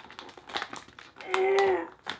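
Stiff clear plastic packaging crinkling and clicking as it is twisted and pried to free a toy stuck inside, with a short held hum from the person straining at it about one and a half seconds in.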